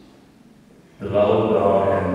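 A man's voice chanting in long held tones, starting about a second in after a quiet pause.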